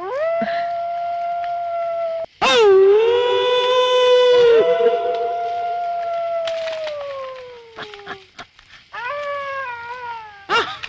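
Jackal howling in long drawn-out calls: the first is held steady for about two seconds, the second is louder and lower, and the third slides slowly down and fades out. A shorter falling howl follows near the end.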